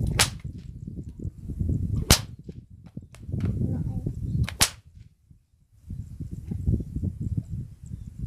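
Homemade whip being cracked three times, about two seconds apart, each a sharp, loud crack, the middle one loudest, over an uneven low rumble.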